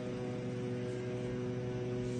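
A steady low hum made of several even tones over a faint hiss, holding level throughout with no sudden sounds.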